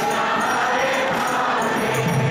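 A large congregation singing a devotional kirtan together, with metal hand cymbals jingling in a steady rhythm.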